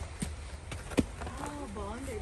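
A sharp click about a second in, the loudest sound here, then a soft wordless voice over a steady low rumble.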